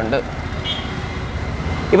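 Marker pen writing on a whiteboard, with a brief thin squeak about a second in, over a steady low background rumble.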